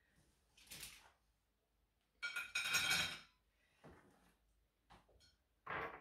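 Porcelain plates and tableware being shifted and set down on a wooden table: a few separate clinks and scrapes, the longest and loudest about two seconds in.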